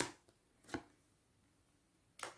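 Two sharp taps as tarot cards are laid down on a table, one right at the start and the second under a second later.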